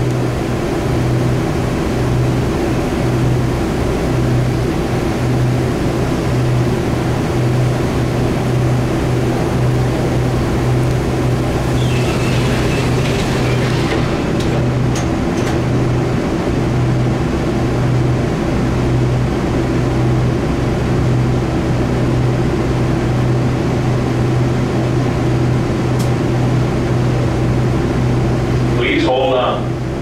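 Interior running noise of an automated airport shuttle tram travelling through a tunnel: a steady rumble with a low hum that pulses roughly once a second. A brief higher-pitched sound comes about halfway through.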